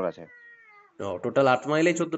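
Speech over a telephone line. In a short pause about a quarter of a second in, a faint high pitched call holds and then falls slightly for under a second before the talking resumes.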